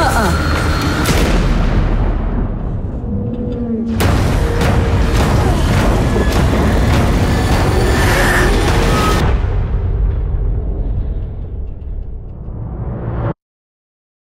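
Trailer score and sound design: dramatic music layered with heavy booming impacts. A sudden loud hit comes about 4 seconds in, and the sound thins to a low rumble before cutting off abruptly near the end.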